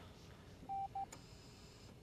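Bedside patient monitor beeping at a single steady pitch: one longer tone then a short one, a little under a second in. A faint click follows.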